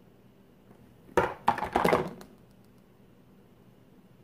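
A brief clatter of several sharp knocks and taps, about a second long starting about a second in, from handling hair-styling tools: a round brush and a flat iron being shifted and set down.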